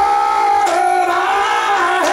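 Singing with musical accompaniment: long held notes, with a sharp beat falling about every second and a half.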